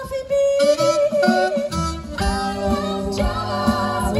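Live jazz performance heard through an outdoor concert sound system: a women's vocal ensemble singing several held notes together in harmony, over double bass.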